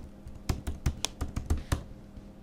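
Computer keyboard being typed on: a quick, uneven run of key clicks that stops shortly before the end.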